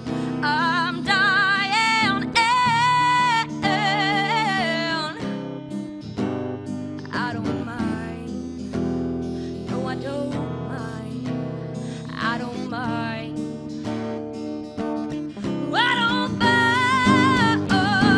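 A woman singing with vibrato over an acoustic guitar. Her voice fades back in the middle, leaving mostly the guitar, and comes back strongly near the end.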